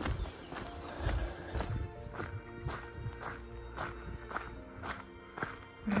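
Walking footsteps on a gravel track, about two steps a second, with soft background music of held tones coming in about two seconds in.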